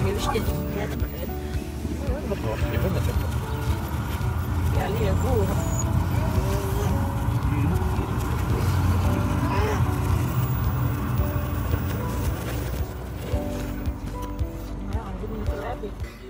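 Steady low rumble of a canal narrowboat's engine, with indistinct voices over it.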